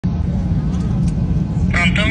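Steady low rumble of airliner cabin noise, with a woman's voice starting near the end.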